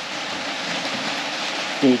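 Rain on the shop roof: a steady, even hiss.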